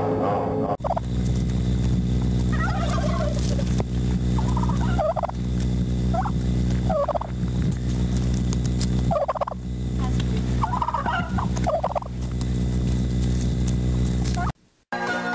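Turkeys gobbling, about seven short warbling gobbles spread through the clip, over a steady low drone.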